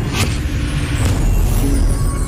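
Logo-intro sound design: a deep bass rumble with sweeping whooshes, and a held musical note coming in near the end.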